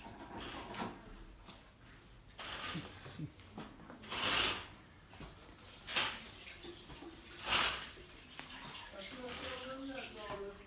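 Wheeled walking frame scraping and shuffling across a floor as it is pushed forward, in short noisy strokes about every second and a half, the loudest about four seconds in.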